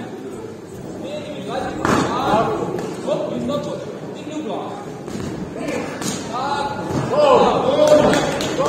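Voices calling out across a large hall while kickboxers fight, with a few sharp thuds of kicks and punches landing, about two seconds in and again near six and seven seconds.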